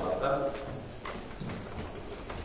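A man's voice trails off in a large hall, followed by a few faint knocks and rustles over a low room murmur.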